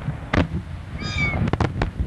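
Daytime aerial firework shells bursting: a loud bang shortly after the start, then a quick cluster of three bangs about a second and a half in. Between them, about a second in, a short high-pitched cry with a slightly falling pitch.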